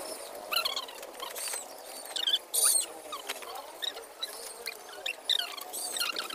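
Dry palm fronds and a woven plastic sack rustling and crackling as they are handled, loudest a little past the middle. Short high squeaky chirps come and go throughout.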